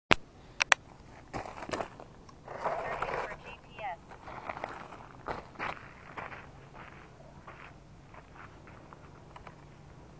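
Close handling noise from a drone being carried: sharp clicks and knocks in the first second, then gravel crunching and scraping as it is set down on stony ground. Faint footsteps on gravel follow near the end.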